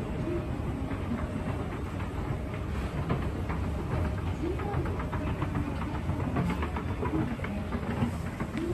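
Hitachi escalator running, a steady low mechanical rumble with a quick run of clicks from the moving steps in the middle.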